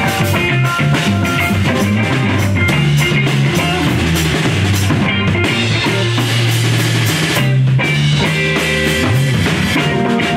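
Live rock band playing: electric guitars, bass guitar and drum kit with frequent cymbal hits.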